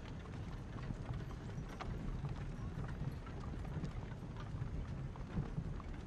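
Horse hooves clip-clopping with a steady low rumble underneath, as of a horse-drawn carriage moving, faint scattered ticks over it.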